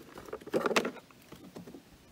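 Plastic fuel-tank cap on a petrol lawn mower being twisted off, a short run of scraping clicks about half a second in, with lighter ticks of the cap and hand on the plastic around it.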